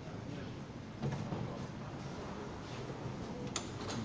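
Metro train's passenger sliding doors opening after the door-open button is pressed, over a steady station and train hum, with a sharp click near the end.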